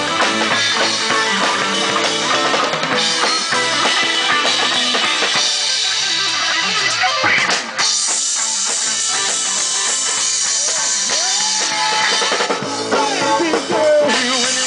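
Live rock band playing an instrumental passage: drum kit with cymbals, electric guitars and bass guitar. About halfway through the playing drops out for a moment, then comes back with a brighter wash of cymbals.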